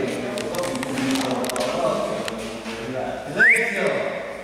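Voices talking in a large indoor hall, with a few sharp clicks in the first half and a short, rising high-pitched sound about three and a half seconds in.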